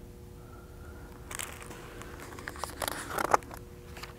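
Pages of a picture book being turned: paper rustling and crackling in a few short bursts, starting about a second in and strongest near the end.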